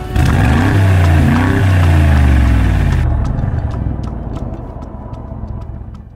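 Mercedes-Benz G-Class (G-Wagon) V8 engine revving as the car drives in. The engine note falls in pitch. It is loud for the first three seconds, then fades away.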